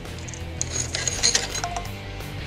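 Several light metallic clinks in quick succession, around the middle, as the metal axle spacer and front axle are slid out of a scooter's front wheel hub.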